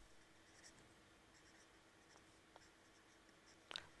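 Faint scratching of a marker pen writing on paper, with a low steady hum beneath.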